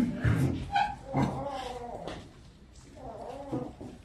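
Wordless human vocal sounds, drawn out and low, coming in several stretches with short pauses between them.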